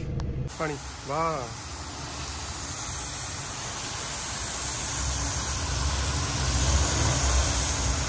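Hose nozzle spraying a jet of water onto a tractor's bodywork and wheels: a steady hiss that grows slightly louder toward the end, over a low rumble. A brief voice about a second in.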